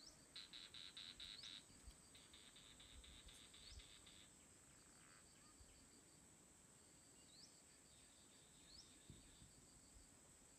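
Faint forest insects: a steady high drone, with two stretches of rapid pulsed trilling in the first four seconds and a few short rising chirps scattered through.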